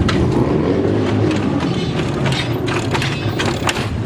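Lowrider cars hopping on hydraulic suspension: repeated short metallic clanks and rattles over the steady low rumble of engines.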